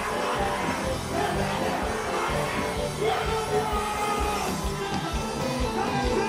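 Live Haitian compas band music amplified over a PA, a male singer's voice over a steady, repeating bass beat.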